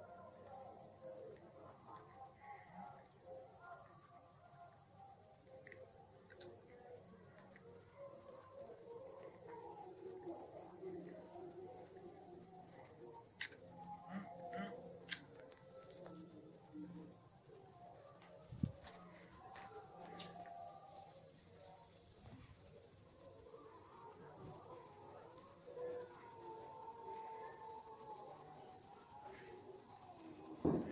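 Crickets and other night insects chirping: a continuous high trill with an evenly pulsing chirp beneath it.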